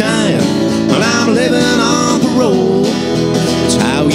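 A man singing with a strummed acoustic guitar: a solo acoustic song performed live.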